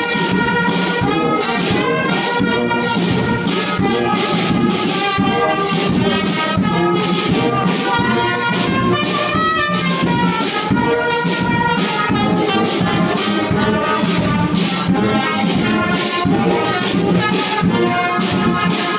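Brass band playing: trumpets and a tuba carrying the tune over a steady beat from a bass drum and a side drum.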